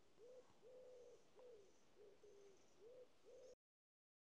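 Faint cooing of a pigeon: a run of about six short, low coos, then the sound cuts off to silence about three and a half seconds in.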